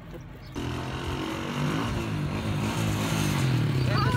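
Small motorcycle engine running from about half a second in, its pitch rising and falling slightly with the throttle.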